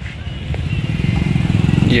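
A motorcycle engine running close by, growing louder over the first second and then holding steady.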